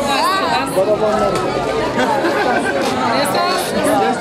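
Several people talking at once: overlapping conversational chatter among a small crowd of guests.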